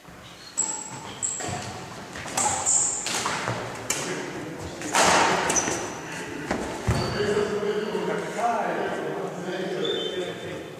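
Badminton rally: a shuttlecock struck back and forth with rackets, a series of sharp string hits a second or so apart, the loudest about halfway, echoing in a large sports hall.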